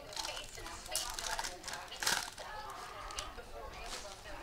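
Foil wrapper of a Panini Prizm basketball card pack crinkling and rustling in gloved hands as the pack is opened and the cards are pulled out, with a few sharp crackles, the loudest about two seconds in.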